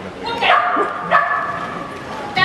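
A papillon yapping twice in high-pitched calls, the first dropping in pitch, excited barking while it runs the agility course.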